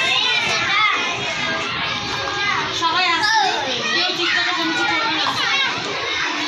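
Several young children's high voices talking and calling out over one another in a lively, continuous chatter.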